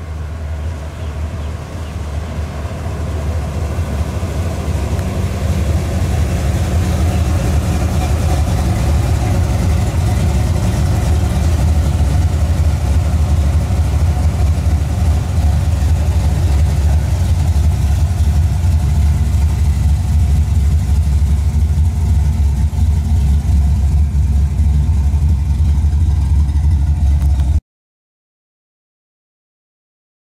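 A 1970 Ford Mustang's 302 V8 running with a deep, steady exhaust note, growing louder over the first several seconds as the car approaches, then holding loud and close until it cuts off abruptly near the end.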